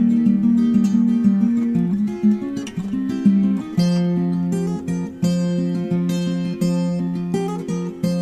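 Acoustic guitar playing picked notes in the song's instrumental opening, with no singing yet.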